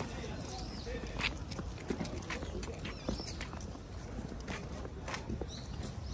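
Footsteps on stone paving, heard as scattered short clicks at irregular intervals, over a steady low wind rumble on the microphone.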